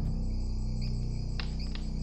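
Crickets chirping in a steady high trill over a low, sustained music drone: night-time ambience.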